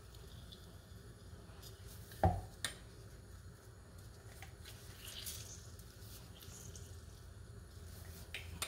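Faint sounds of a metal hand-held lime squeezer pressing a lime, its juice dripping into a plastic chopper cup. There are two light knocks a little over two seconds in, the first the loudest.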